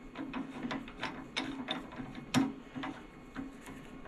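Irregular metallic clicks and clatter from a four-jaw scroll chuck on a wood lathe as its key is worked to close the jaws onto a wooden block. The loudest click comes a little past halfway.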